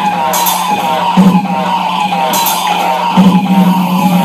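Loud experimental noise music: a steady low hum under repeated falling pitched tones, with bursts of hiss about two seconds apart.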